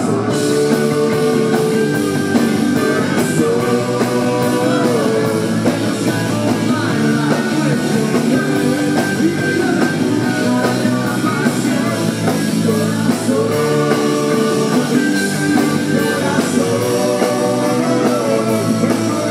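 A rock band playing live, with electric guitars, drum kit and congas, and a man singing lead over it. The music is loud and continuous, in phrases of held notes about a second long.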